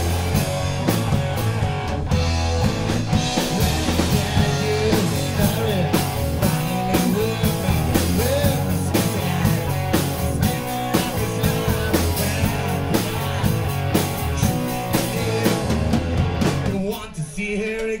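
Rock band playing live: electric guitars and drum kit. The band drops out briefly near the end of the passage before the drums come back in.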